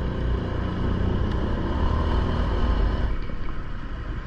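A motorcycle's engine running at low speed in city traffic, heard from the bike itself as a steady low rumble with road noise.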